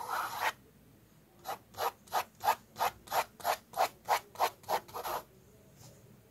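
Mechanical pencil lead scratching on sketchbook paper: a short run of circling strokes, about a second's pause, then about a dozen quick back-and-forth strokes, roughly three a second, drawing a straight guide line.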